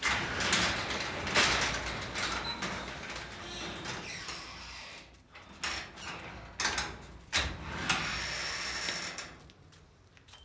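A sectional garage door rolling open along its metal tracks: a sudden start, then about five seconds of steady rattling. It is followed by a few separate knocks and a second short stretch of rattling.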